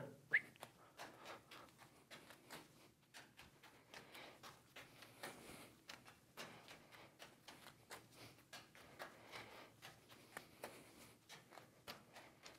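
Faint soft taps of juggling balls landing in the hands during a three-ball multiplex pattern, an irregular run of small catches and throws.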